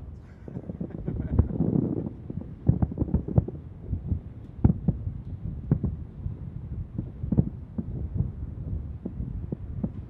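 Distant aerial fireworks shells bursting: a run of dull, low booms at irregular spacing, sometimes several a second, over a low rumble.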